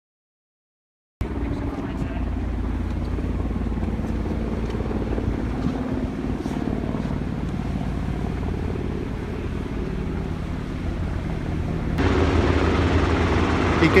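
Distant US Coast Guard MH-60T Jayhawk helicopter, a steady low drone of its twin turbines and rotor. It grows louder about two seconds before the end as the helicopter comes closer. The sound starts about a second in, after dead silence.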